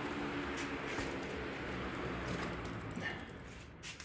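Box fan whirring as it coasts down after being switched off, fading gradually and dropping away near the end.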